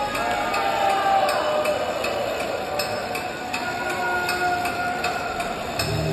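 Concert crowd waiting in a large hall, clapping in a steady beat with shouts and whistles over it. At the very end a deep, loud droning intro begins over the PA.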